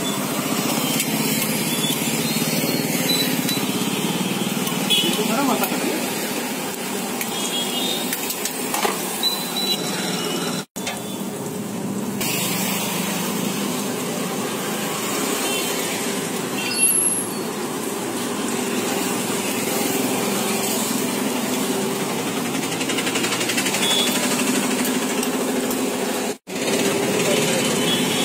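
Malpua batter deep-frying in a large wok of hot oil: a steady sizzle and bubbling, over background voices and street traffic. The sound drops out for an instant about ten seconds in.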